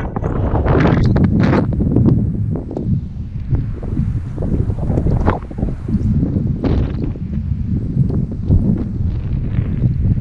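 Strong, gusty wind blowing across the microphone: a deep, rumbling rush that rises and falls with each gust.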